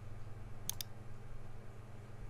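Two quick computer mouse clicks, close together a little past a third of the way in, placing Pen-tool anchor points, over a steady low hum.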